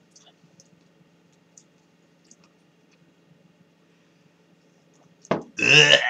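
Quiet room with a low steady hum and a few faint ticks, then a short click about five seconds in, followed by a man's drawn-out "mmm" as he tastes a lemon chuhai.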